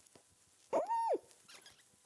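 A woman's closed-mouth 'mm' hum through puffed cheeks, once, short, rising in pitch and falling back, as if blowing up a balloon.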